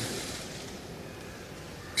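Faint, steady background hiss of room tone and microphone noise in a pause between spoken sentences.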